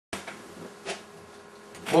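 Low, steady electrical buzz, starting abruptly as the recording begins. A man starts speaking at the very end.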